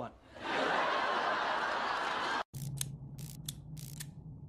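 A loud breathy hiss lasting about two seconds that stops abruptly, followed by a low steady hum with about five sharp clicks.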